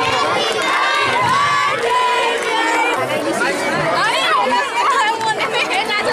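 A crowd of many voices, children's among them, talking and calling out over one another at once.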